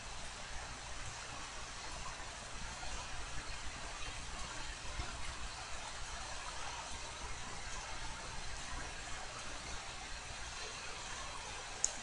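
Faint steady hiss with a low hum underneath: microphone room tone.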